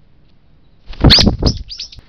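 Brown-eared bulbul calling loudly right at the microphone: a quick run of four or five harsh, falling notes starting about a second in, the first the loudest.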